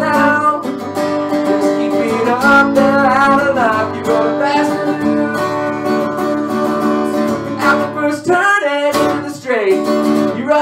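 Acoustic guitar strummed steadily, with a man singing along in places.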